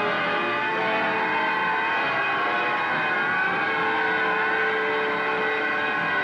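Film soundtrack of sirens wailing over a held orchestral chord, several tones sliding slowly up and down in pitch, loud and steady throughout.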